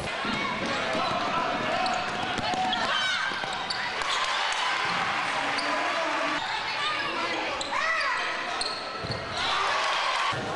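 Basketball game sounds: a ball bouncing on the hardwood court, several short squeaks of sneakers on the floor, and the chatter of voices from players and crowd throughout.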